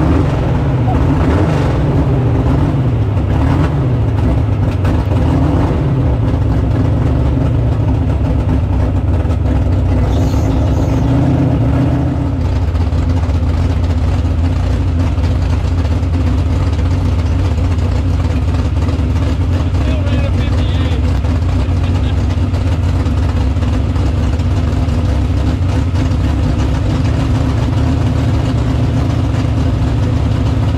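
Drag-race Chevrolet Vega's engine heard from inside the caged cockpit: its revs waver up and down for the first dozen seconds, then it settles into a steady, loud idle.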